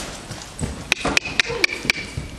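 A handler's tongue clicks urging on a loose horse: five quick, sharp clicks about four a second, each with a slight ring, in the second half.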